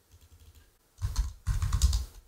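Typing on a computer keyboard: a few light key taps, then a quick run of keystrokes in the second half.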